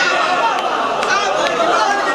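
Men's voices talking, several at once, with no single clear speaker.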